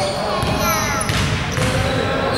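Basketball game sounds on a hardwood indoor court: a ball bouncing, players' voices calling out, and a few short gliding squeaks of sneakers on the floor, all echoing in a large hall.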